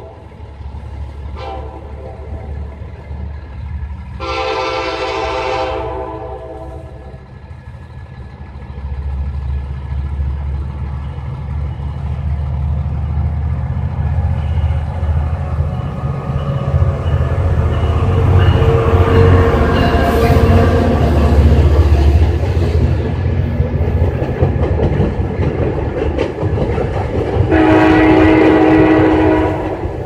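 Diesel-hauled passenger train sounding its horn: a short blast right at the start, a brief toot, a longer blast about four to six seconds in, and a long blast near the end. In between, the locomotive's engine rumble grows louder as the train comes up and rolls onto the steel trestle, with wheel clatter from the cars.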